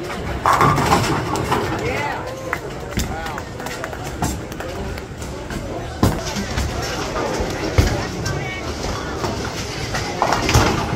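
Bowling alley din: voices and music mixed with the sharp knocks and clatter of bowling balls and pins, loudest about a second in.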